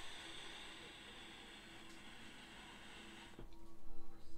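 A draw on a Digiflavor Mesh Pro RDA with its mesh coil firing: a steady hiss of air pulled through the airflow holes over the coil. It runs about three and a half seconds and stops with a low thump.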